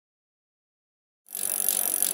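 Dead silence, then a little over a second in a steady, high hiss of outdoor background noise starts.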